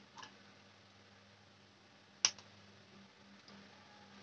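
Quiet handling of a small router circuit board, with one sharp click a little past two seconds in and a fainter click just after.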